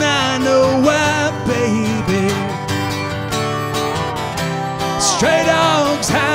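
A country song played live on acoustic guitar and pedal steel guitar. A male voice holds the sung word "now" at the start, the instruments carry on between the vocal lines, and the voice comes back in near the end.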